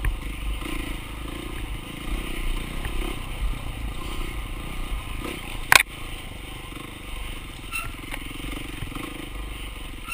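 Dirt bike engine running and revving as the bike is ridden along a rough wooded trail. A single sharp knock about halfway through.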